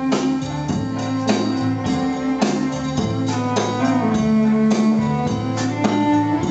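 Live country band playing an instrumental passage: a fiddle bowing long held melody notes over guitar and drums.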